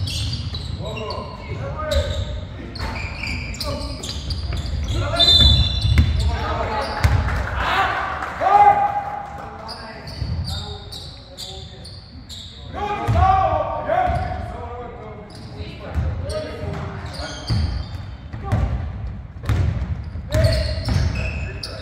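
Basketball bouncing on a wooden gym floor, echoing in a large hall, with voices calling out on court, loudest about eight and thirteen seconds in.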